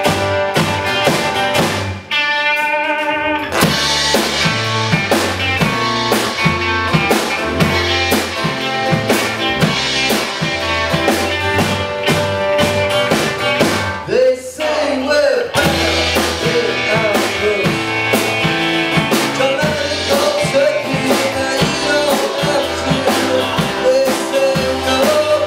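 Rock band playing live: electric and acoustic guitars over a drum kit keeping a steady beat. The drums drop out briefly twice, about two seconds in and again around the middle, leaving the guitars ringing. A voice sings over the later part.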